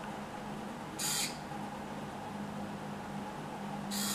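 Small hobby servo motor pulling a thread to bend a fork: a quiet, steady low hum that grows louder about halfway through, with two short hissy bursts, about a second in and again at the end.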